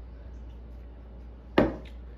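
A plastic cup set down on a wooden table: one sharp knock about one and a half seconds in, over a steady low hum.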